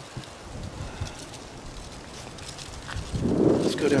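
Faint outdoor ambience with light wind noise on the microphone and a few soft rustles. A man's voice starts about three seconds in.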